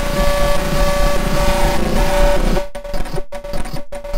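Eurorack modular synthesizer jam: one held synth note over a dense, noisy wash of electronic drums, which about two and a half seconds in breaks up into rapid stuttering chops with short gaps, the drum triggers being cut up by the IDUM gate-effects processor as its knob is turned.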